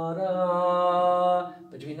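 A man singing one long held note, without accompaniment, for about a second and a half: the close of an interrupted cadence (V to vi), which doesn't resolve back to the tonic chord.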